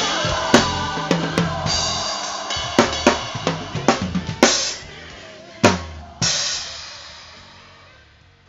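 Acoustic drum kit playing a final fill of quick snare and tom hits, then two last accented hits with crash cymbals about five and a half and six seconds in. The cymbals ring on and fade out as the song ends.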